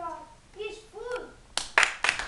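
A child says a few short words, then hand clapping starts about one and a half seconds in: several sharp, loud claps, about four a second.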